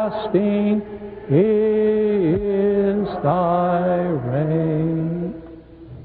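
A slow chant sung on long held notes, one melodic line dipping between notes, with the last note ending about five seconds in and leaving quiet room tone.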